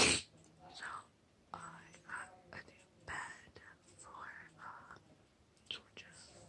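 A woman whispering close to the microphone in short phrases, with a brief loud burst of noise right at the start.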